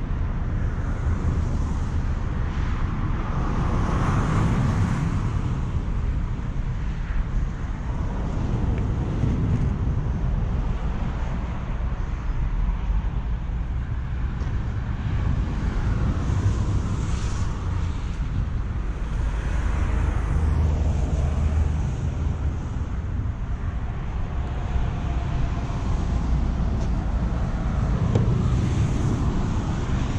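Steady outdoor traffic rumble from a nearby highway, with vehicles swelling past every few seconds and wind on the microphone.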